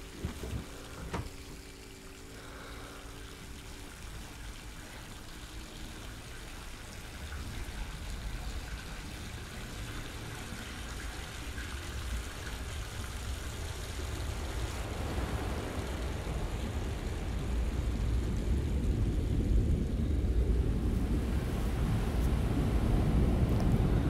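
A low rumbling noise that slowly swells louder, with a faint steady two-note hum in the first few seconds and a single click about a second in.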